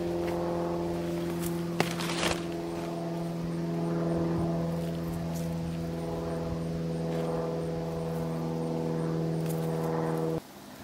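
Steady drone of an engine or motor held at one even pitch, with a couple of soft knocks about two seconds in.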